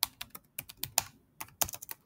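Typing on a computer keyboard: a quick, irregular run of key clicks with a brief pause a little past halfway.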